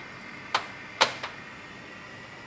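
Two sharp clicks about half a second apart as the material pins holding a cut plywood sheet are pulled from a laser engraver's metal honeycomb bed, over a faint steady hum.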